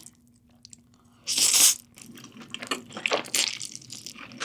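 Close-miked eating sounds of thin spicy wheat noodles (golbaengi somyeon): a short loud noisy burst about a second in, then a run of small wet clicks of slurping and chewing.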